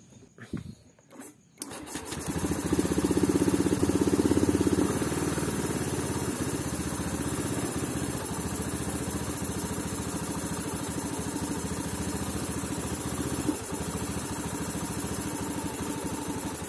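Honda Beat scooter's single-cylinder four-stroke engine being started about one and a half seconds in. It runs at a raised idle for a few seconds, then drops to a lower, steady-sounding idle. The scooter is being checked for an idle that will not stay stable and sometimes stalls.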